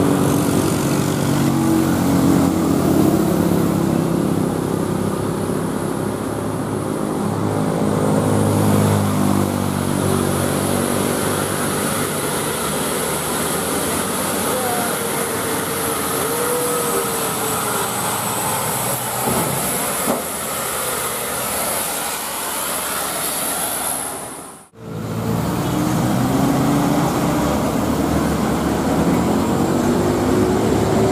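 Diesel engines of sand-loaded light dump trucks labouring up a hill, mixed with passing motorcycles and road traffic. The sound drops out briefly about 25 seconds in, then the engine sound resumes.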